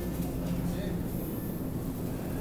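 Steady low hum of a supermarket freezer aisle, with faint voices in the background.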